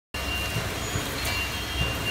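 Steady background rumble and hiss of a factory floor, with a faint high-pitched whine running through it.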